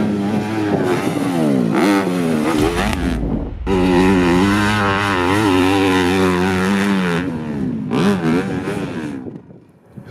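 Dirt bike engine revving up and down as it is ridden, its pitch rising and falling with the throttle, dropping out briefly twice and fading near the end.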